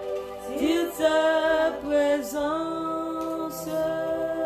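A woman singing a slow worship phrase with a wavering, sliding pitch over sustained backing chords; the voice drops out about two and a half seconds in while the chords keep holding.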